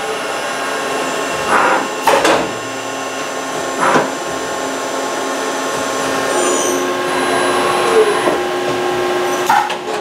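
CNC vertical machining center dry-running a drilling cycle in the air, with no part on the table. The spindle and axis drives hum and whine steadily, broken by several short whooshing bursts as the axes move.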